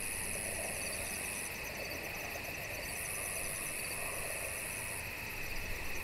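Chorus of night insects, crickets and katydids, trilling steadily in several high pitches, with a very high buzzing trill that cuts in and out twice.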